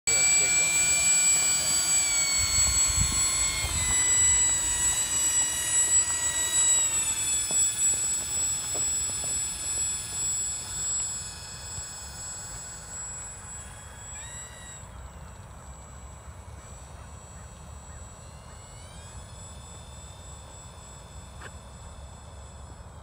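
Twin propellers of a large radio-controlled OV-10 Bronco model running close by, their pitch stepping down a few times with the throttle, then growing fainter as the plane taxis away down the runway. A brief rise and fall in pitch comes about 14 seconds in.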